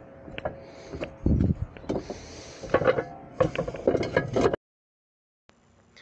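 Clay roof tiles scraping and clattering against each other as they are handled by hand, with a dull thump about a second in and bursts of sharp knocks after it; the sound cuts off suddenly near the end.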